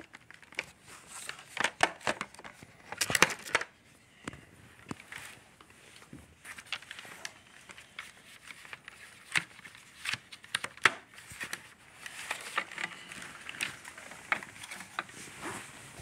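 Irregular plastic clicks, knocks and rustling from hands handling a Shark Apex vacuum's floor nozzle and brush roll, with the vacuum switched off. The sharpest clicks come in a cluster a few seconds in and again around the middle.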